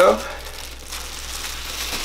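Soft crinkling and rustling of gloved hands handling something below the table, with a few small clicks, over a low steady hum.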